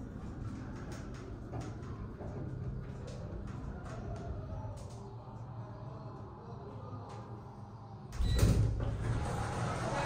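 KONE hydraulic elevator cab, closed and waiting, with a steady low hum and faint ticks; about eight seconds in, the cab's sliding doors open with a louder low rumble.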